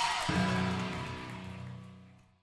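Amplified guitar notes ringing out after a live band's last song. A new low note is struck about a quarter second in, and the sound fades steadily away to silence.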